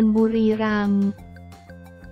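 A narrator's voice reading in Thai over quiet background music; the voice draws out its last syllable and stops about halfway through, leaving the music alone.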